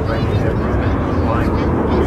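Avro Vulcan bomber's four Rolls-Royce Olympus jet engines running as it flies past, a steady heavy rumble. Voices can be heard faintly over it.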